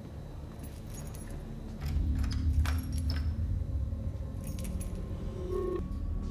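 Sound from the TV drama's soundtrack: clusters of light metallic jingling and clicks, with a low rumble that comes in about two seconds in and stays under them.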